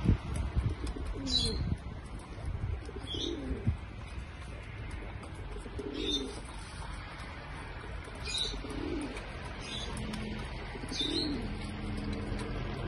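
Domestic pigeons cooing: low, rolling coos repeated about every two to three seconds. Short high chirps sound alongside.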